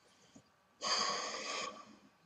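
A man's loud breath, a snort-like rush of air close to the microphone, about a second in and lasting under a second.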